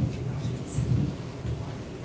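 Handheld microphone being handled as it is passed from one person to another: low, irregular rumbling handling noise with soft bumps.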